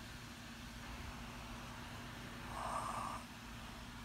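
Quiet room background with an even hiss and a steady low hum. A short, soft noise of under a second comes about two and a half seconds in.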